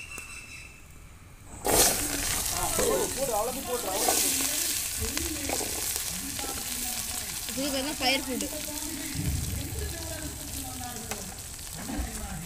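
Freshwater mussels going into a pan of very hot oil: a sudden loud sizzle starts about two seconds in and carries on steadily as they fry.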